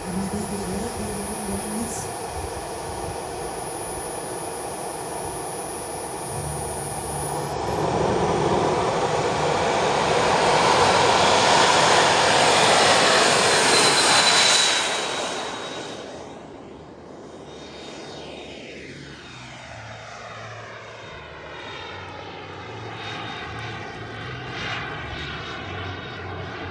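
Twin JetCat turbine engines of a 1/6-scale RC MiG-29 jet. They start with a steady high whine, then spool up to full power about eight seconds in, with the whine rising in pitch, for the takeoff run. The sound is loudest for several seconds, then fades with a sweeping, phasing tone as the jet climbs away.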